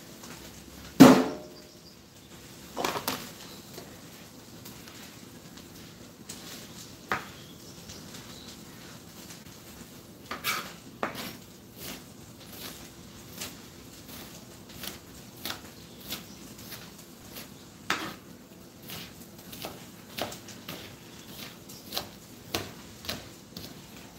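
Knife chopping onion on a plastic cutting board: a string of short, sharp, irregular taps. A single louder knock about a second in.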